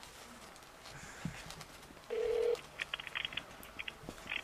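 A telephone call being placed over faint line hiss: a short steady beep about two seconds in, then a quick run of brief clicks and bursts from the phone line.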